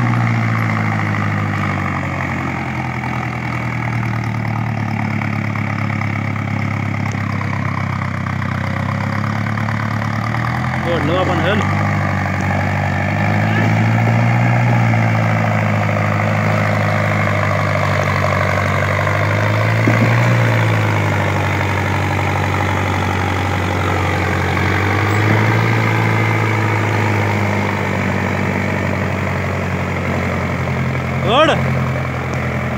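Mahindra Arjun tractor's diesel engine labouring under the load of two trailers of sugarcane, its note rising and falling in slow swells every several seconds.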